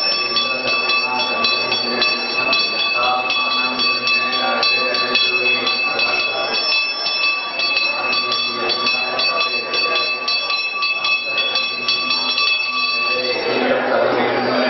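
A temple hand bell (ghanta) rung rapidly and without pause, its clapper strikes running together into a steady ringing with several high tones. It stops a little before the end.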